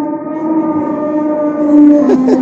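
Animatronic stegosaurus's recorded call played through its speaker: one long drawn-out bellow held at a steady pitch, swelling a little near the end.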